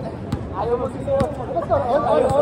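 Basketball bouncing twice on a hard outdoor court, about a second apart, under players' voices calling out.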